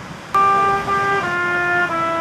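A trumpet begins a slow melody about a third of a second in: held notes, each stepping lower than the one before.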